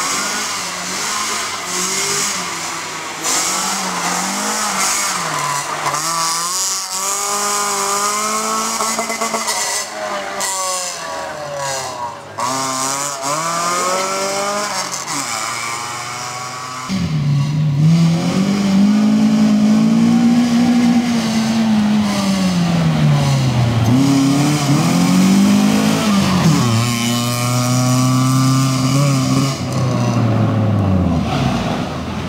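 FSO Polonez Caro rally car driven hard, its engine revving with the pitch rising and falling through gear changes and corners. Just past halfway the sound cuts abruptly to a louder, closer passage of the same hard revving.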